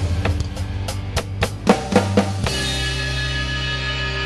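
Drum kit played over a rock ballad backing track: a run of accented drum and cymbal hits over the band's chords, stopping about two and a half seconds in, after which the backing track's held chord rings on alone as the song closes.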